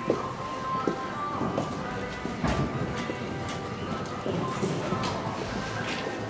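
Horse's hoofbeats on the arena footing, heard under steady background music and faint voices.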